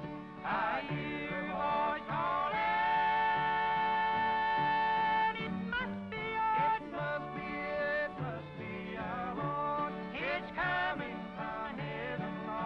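Bluegrass gospel trio of men singing in close harmony over mandolin, acoustic guitar and upright bass. The voices hold one long high note from about two and a half to five seconds in.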